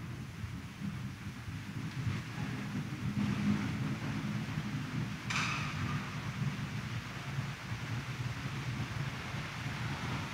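Low, steady background rumble of a large crowded church as the congregation gets to its feet, with one short sharp noise about five seconds in.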